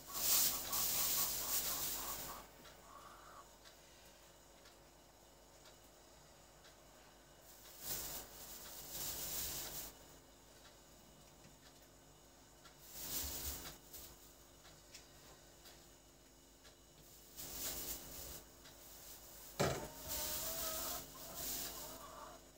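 Plastic bag crinkling as it is opened and filled with cottage cheese, with a spoon scraping in a plastic bucket, in several short bursts separated by quiet; a single sharp knock comes near the end.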